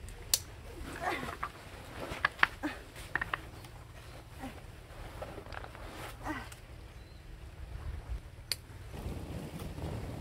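A canvas rucksack being handled and swung onto the back: scattered short clicks, knocks and rustles, with stones knocking underfoot. A louder rushing noise comes in about nine seconds in.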